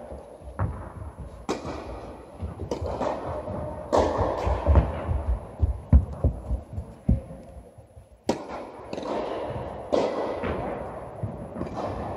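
Tennis rally on an indoor court: a series of sharp racket-on-ball hits and ball bounces, roughly a second apart, each ringing on in the echo of a large hall, with a lull in the middle.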